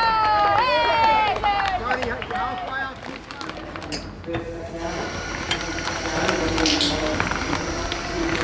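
A voice calling out in long, drawn-out falling shouts among an outdoor crowd, then a quieter stretch from about three seconds in.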